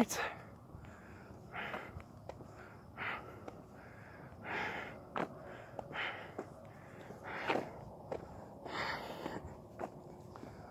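A man breathing heavily while walking, a loud breath about every one and a half seconds, with a few light steps or taps between breaths.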